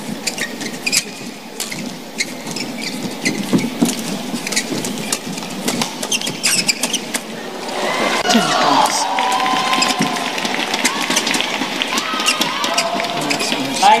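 Badminton doubles rally: a string of sharp racket hits on the shuttlecock and shoe squeaks on the court, over arena crowd noise that swells into cheering and shouting about eight seconds in as the rally goes on.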